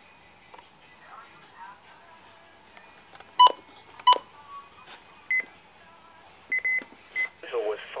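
Short electronic beeps from weather alert radios: two loud beeps about two-thirds of a second apart, then several quieter, higher-pitched short beeps, some single and one double.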